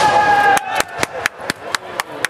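A long held shout that stops about half a second in, followed by hand clapping, about four claps a second, as red flags go up to award a point in a kendo bout.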